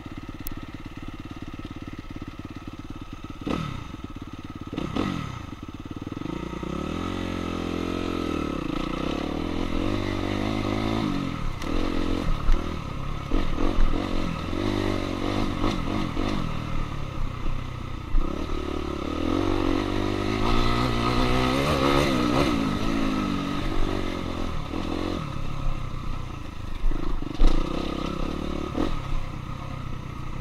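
2016 Suzuki RM-Z250 single-cylinder four-stroke dirt bike engine, heard from on the bike as it is ridden along a trail. It runs low at first with two quick throttle blips, then revs up and down again and again as the rider accelerates and backs off. Occasional sharp knocks come through over the bumps.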